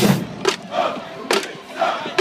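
Marching band members shouting in unison, broken by a few sharp drum hits from the drumline.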